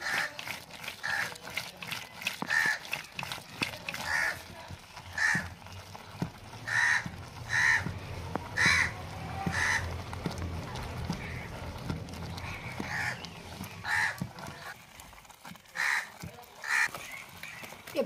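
A wooden dal churner twirled in a clay pot of thick lentils, knocking against the pot and sloshing through the dal. Over it, crows caw repeatedly, about once a second.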